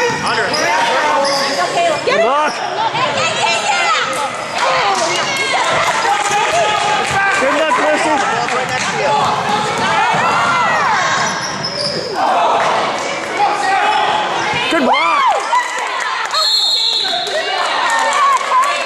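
Basketball game sounds on a hardwood gym floor: a ball bouncing and players running, with many overlapping voices of players and spectators calling out.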